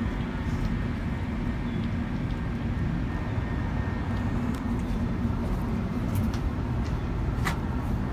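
Steady low rumble of wind on the microphone, with a faint steady hum underneath and a short sharp click near the end.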